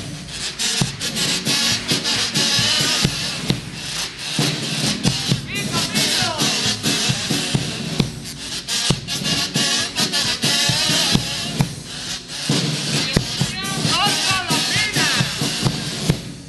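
Carnival kazoos (pitos) buzzing a melody in unison, with a strummed Spanish guitar and a steady drum beat underneath. It is an instrumental passage, with no singing.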